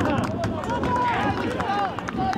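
Several men's voices shouting and calling across an outdoor football pitch, overlapping one another.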